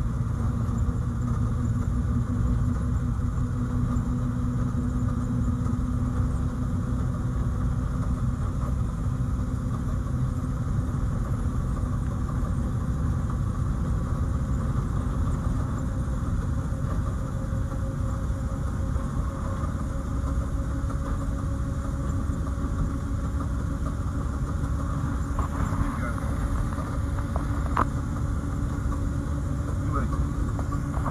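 1952 Morris Minor's engine running at a steady cruise of about 30 mph, heard from inside the car as a constant low drone.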